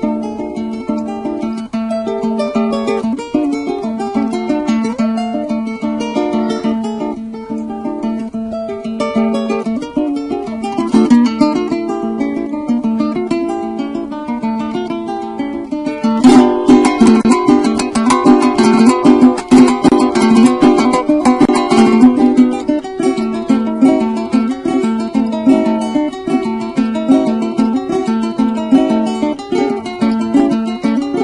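Solo Venezuelan cuatro, a small four-string nylon-strung guitar, played as a solo piece. Single picked notes run over a repeated low note, and about halfway through the playing turns louder and faster, strummed for several seconds, before going back to picked melody.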